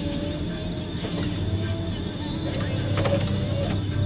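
Forest harvester's diesel engine running with a steady hydraulic whine as the crane swings the Ponsse H8 harvester head. A few clicks and knocks come about three seconds in.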